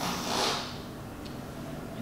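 A person breaking wind: one short, airy burst lasting about half a second.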